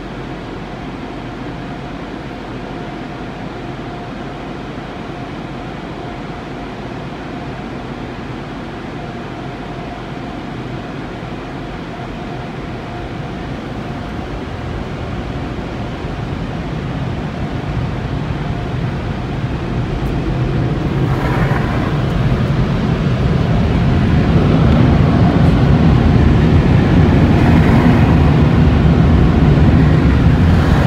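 Automatic tunnel car wash heard from inside the car's cabin: a steady rush of water spray and wash machinery on the body and glass. It grows louder over the second half to a loud, heavy rush.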